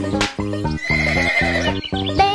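A cartoon horse neighing for about a second in the middle, over the instrumental backing of a children's song.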